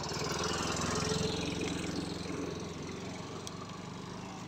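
A small engine running with an even, fast pulsing beat, growing louder about a second in and then slowly fading away.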